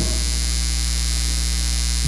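Steady low electrical mains hum with a faint hiss over it, unchanging throughout.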